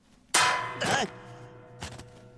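A sudden loud metallic clang in a cartoon soundtrack, leaving a steady ringing tone that hangs on. Just after it comes a short squeaky vocal cry from the cartoon squirrel Scrat, and there is a smaller knock near the end.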